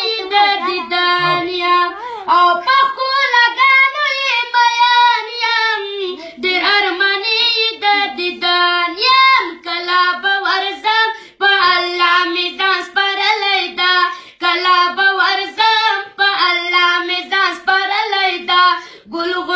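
A boy singing a Pashto naat unaccompanied in a high voice, holding long notes that bend in pitch, with brief breaths between phrases.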